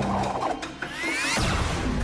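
Cartoon sound effect of a slug blaster being twirled and cocked: mechanical ratcheting clicks, then several rising whines about a second in.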